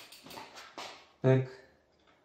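Faint, irregular clicking and rattling from a bicycle rear derailleur and chain as a torque wrench is worked against the derailleur cage during a clutch-resistance test. A short spoken word follows.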